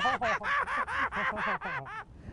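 A man laughing, a quick run of about eight 'ha' pulses, roughly four a second.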